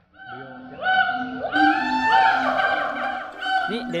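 Siamangs and black-handed gibbons calling back and forth: a really noisy chorus of long held notes and rising slides in pitch from several overlapping voices, getting louder about a second in.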